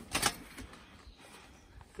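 The aluminium scissor frame and canopy of a pop-up gazebo being handled as it is folded: a brief clatter just after the start, then only faint handling sounds.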